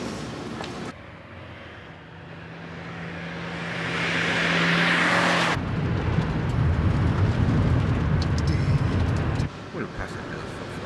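A jet aircraft's engine noise swelling steadily louder for a few seconds over a steady hum, cut off abruptly. It is followed by the low, steady road rumble of a moving car heard from inside the cabin, with terminal ambience briefly at the start and the end.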